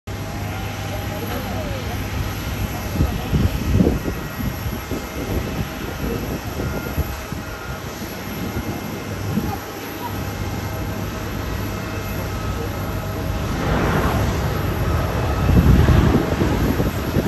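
Distant jet engine noise of a Japan Airlines Airbus A350 (Rolls-Royce Trent XWB turbofans) landing, a steady low rumble with wind gusts on the microphone. The engine noise swells near the end as the jet rolls out after touchdown.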